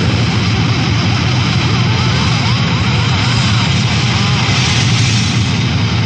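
A speed metal band's closing sustained wall of distorted guitar, bass and crashing cymbals, heard from a 1984 demo tape recording. It holds loud and steady, with wavering high notes through the middle.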